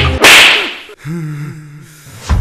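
Film slap sound effect: one loud, sharp whip-like crack with a swish about a quarter second in, fading over about half a second. A quieter low wavering tone follows in the second half.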